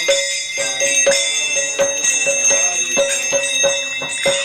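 A hand bell rung continuously in arati worship, its high ringing tones held, over rhythmic strikes about three to four a second.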